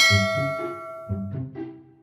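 A single loud metal clang from a steel shelf panel landing in a shopping cart, ringing on with several high tones that fade over about a second and a half. Background music with a steady beat runs underneath.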